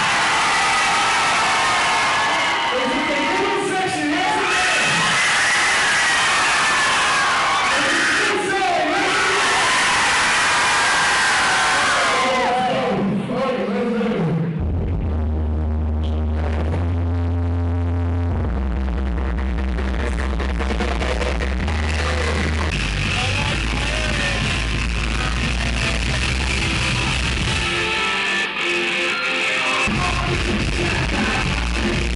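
Live music played loud over a concert PA, with a performer's voice on the microphone. About halfway through, a beat with deep bass notes that step from pitch to pitch comes in.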